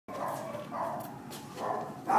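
Small puppy giving three short, pitched yaps, with a few light clicks between them.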